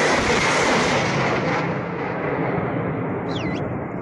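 A truck-mounted multiple rocket launcher (BM-21 Grad type) firing a salvo: a loud continuous rushing roar of rockets leaving the tubes in quick succession. About one and a half seconds in the roar loses its sharp top end and carries on duller and gradually weaker as the salvo ends.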